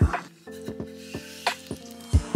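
A wooden spoon stirs a thick cream sauce in a pan, rubbing along the bottom, over background music with a steady beat.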